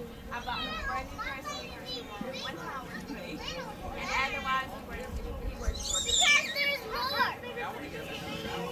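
Children's voices calling and chattering in a crowd, with one loud, high shout about six seconds in.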